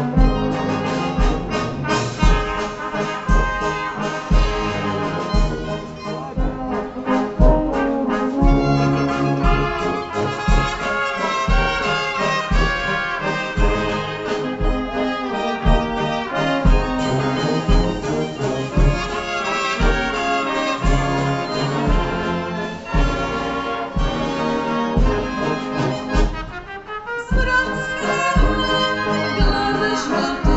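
Slovak village brass band (dychová hudba) playing an instrumental passage: trumpets and trombones carry the melody over a tuba bass that keeps a steady beat of about two a second. The band briefly drops in level near the end.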